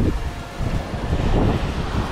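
Wind buffeting the microphone with irregular low thuds, over the wash of small ocean waves breaking and running up a sandy beach.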